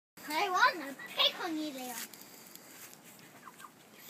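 Hens clucking in a chicken run with a toddler's wordless voice: two drawn-out calls in the first two seconds, the second falling in pitch, then a few faint short chirps.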